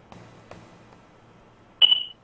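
A quiet open telephone line with a couple of faint clicks, then a single short high-pitched beep near the end as the caller's line is put through on air.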